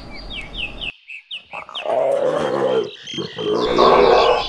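A lion growling, a coarse pitched rumble about halfway through, with short descending bird chirps in the first second and a half.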